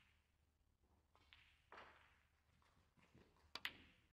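Snooker cue tip striking the cue ball: a sharp double click near the end, after a few soft rustles in an otherwise quiet arena.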